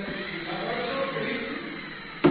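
Power screwdriver running steadily as it drives a screw into a door handle's mounting plate. The motor's pitch rises slightly, then falls.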